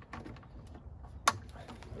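Plywood stove drawer being pushed in on full-extension metal drawer slides: faint rolling and small clicks, with one sharp click or knock about a second and a quarter in.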